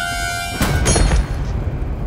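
Dramatic TV background score: a held chord breaks off about half a second in, cut by a sudden hit sound effect with a short ringing tail, then a low rumble.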